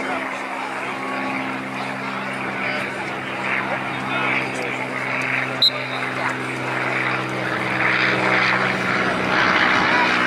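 An engine drones steadily in the background, its pitch shifting slightly near the end, under distant shouting from players and spectators. A single short, sharp whistle blast sounds a little past halfway through as the faceoff starts.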